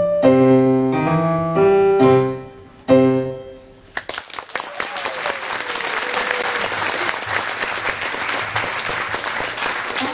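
Piano playing the closing chords of a blues piece: a few struck chords, the last one about three seconds in left to ring and die away. About a second later an audience breaks into applause that carries on steadily to the end.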